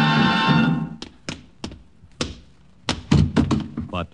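Orchestral theme music ends about a second in, followed by a string of sharp taps or knocks. The taps are spaced out at first and come quicker and closer together near the end.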